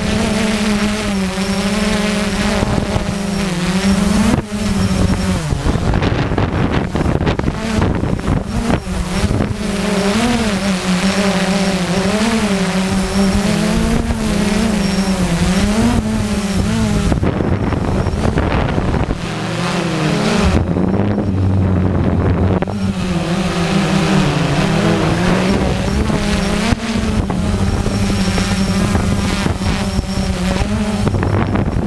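Small quadcopter drone's electric motors and propellers humming, heard from the drone itself, the pitch wavering up and down constantly as the motors change speed in gusty wind. Wind noise runs under it.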